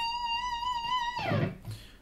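Electric guitar holding the top note of a climbing three-notes-per-string scale run for just over a second with a slight vibrato, then sliding down in pitch and fading out.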